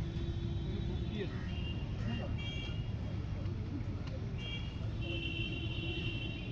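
Outdoor background noise: a steady low rumble, with distant voices and a few held high-pitched tones, the longest near the end.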